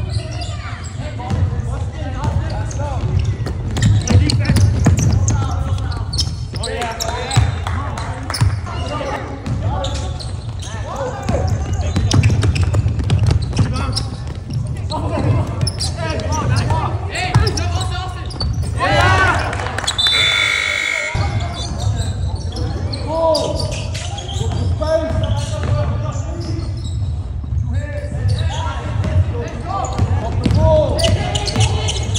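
Basketball being dribbled and bouncing on a hardwood gym floor during a game, with players' and spectators' voices echoing in a large gym. About twenty seconds in, a brief high-pitched squeal.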